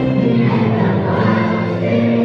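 A children's choir singing a Christmas song with musical accompaniment, steady and unbroken.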